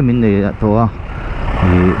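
A man talking over the steady low running noise of a motorcycle moving slowly through traffic, with a short break in the talk about a second in where only the engine and road noise are heard.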